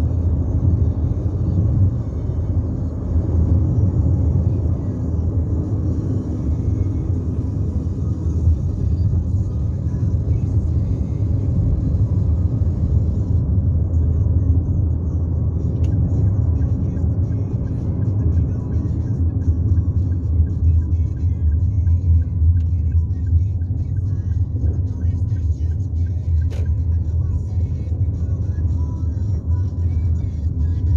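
Steady low road rumble heard inside the cabin of a moving car.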